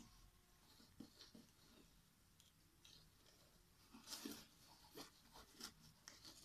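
Near silence, broken by a few faint rustles and taps from the cardboard hand puppet and its yellow mesh 'net' being moved in a casting motion.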